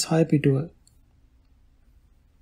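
A narrator reading aloud in Sinhala, the phrase ending under a second in, followed by a pause of faint room tone.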